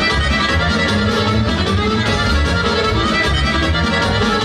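Folk dance music led by accordion, played over a steady, regular beat.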